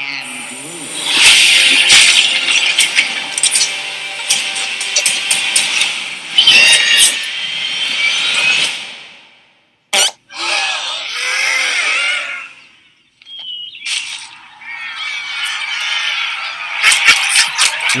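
The soundtrack of an animated film trailer: music with sound effects, dropping to silence twice for under a second, about halfway through and again a few seconds later. In the second half come short sounds that slide up and down in pitch.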